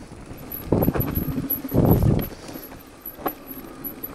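Electric mountain bike ridden over a rough forest dirt trail: tyre and frame rattle, with two louder rumbles about one and two seconds in and a short knock a little after three seconds.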